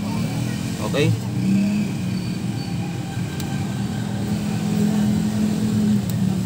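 A steady low motor hum, like an engine running, throughout, with one short spoken word about a second in.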